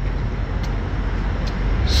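Steady low background rumble, with a few faint clicks.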